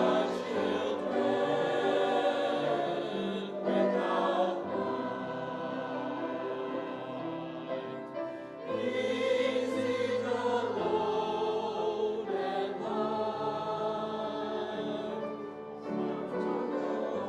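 Mixed church choir of men's and women's voices singing in held phrases, with short breaks between phrases.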